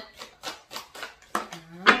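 A tarot card deck being shuffled by hand: a quick, irregular run of soft card flicks and slaps. Near the end a woman's voice starts singing.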